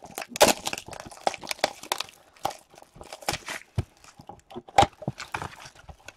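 A hockey-card blaster box being torn open and its cardboard packaging handled by hand: a run of irregular crackles and snaps.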